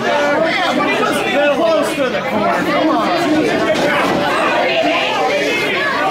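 Spectators talking and calling out over one another, many voices overlapping at once in a large hall.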